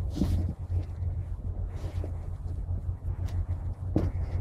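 Pelargonium stems and leaves rustling as they are handled and cut back, with a few faint clicks that fit secateurs snipping the stems, over a steady low hum.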